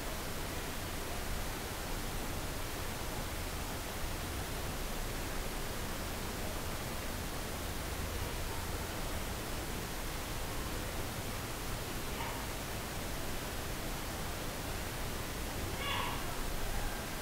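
Steady background hiss from the narration microphone with nothing else going on: room tone between spoken instructions.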